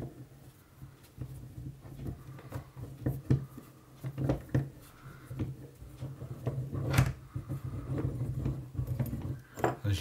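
A steel sash clamp's screw being unwound on a spring-piston air rifle, letting the compressed mainspring push the trigger block back out of the cylinder: irregular clicks, knocks and scrapes of metal parts shifting, with a sharper knock about seven seconds in. A steady low hum runs underneath.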